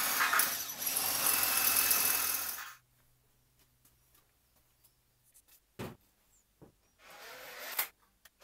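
Cordless drill boring into the milling machine's cast-iron casting to make the hole for a 6 mm mounting stud; it runs steadily and stops abruptly about two and a half seconds in. After a near-silent gap with a couple of short knocks, the drilling starts again near the end.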